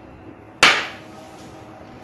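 A single sharp clack about half a second in, ringing briefly: a small ceramic bowl set down on the hard countertop.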